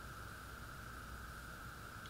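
Quiet background noise: a steady hiss with a faint, constant high-pitched hum underneath, and no other sounds.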